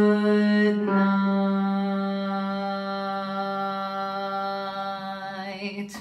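A woman singing the bass part of a barbershop tag alone. She moves to a new note about a second in and holds it as one long, steady note that slowly fades and ends just before speech resumes.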